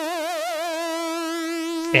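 Nord Stage 3 synth lead patch holding a single note with mod-wheel vibrato at about 5.7 cycles a second; the vibrato eases off after about a second, leaving the note steady.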